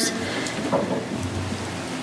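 Steady, even hiss-like noise with no clear pitch, at a moderate level.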